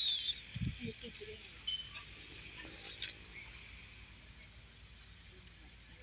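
Faint outdoor summer ambience: steady insect buzzing, with a few short bird chirps in the first couple of seconds.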